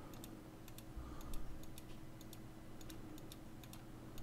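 Computer mouse button clicking repeatedly at an irregular pace, a few clicks a second, many heard as a quick double tick of press and release, as points of a line drawing are placed one by one. A faint steady hum lies underneath.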